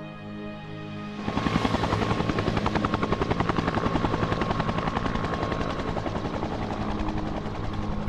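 A small bubble-canopy helicopter running, its rotor chopping in a fast, even beat. It cuts in about a second in, replacing a held music chord.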